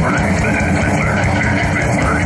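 Heavy metal band playing live through a PA: distorted guitar, bass guitar and drums in a riff that repeats about twice a second, with shouted vocals.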